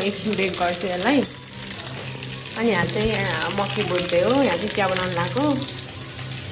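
A voice singing in background music, over a steady hiss.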